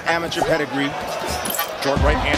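Sound from a televised boxing bout: a voice talking over the arena, with a few dull thuds of gloved punches landing.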